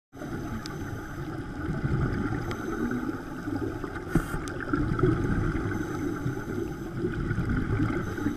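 Underwater sound picked up inside a camera's waterproof housing: a steady, muffled rumble of water, with a few sharp clicks and a brief hiss a little after four seconds in.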